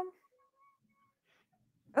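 The tail of a drawn-out hesitating "um" from a man's voice, ending just after the start, then near silence until he begins speaking again at the very end.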